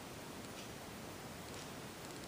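Faint steady background hiss of a quiet room, with no distinct sound event.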